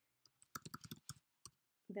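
Computer keyboard typing: a quick, faint run of key clicks lasting about a second, starting about half a second in.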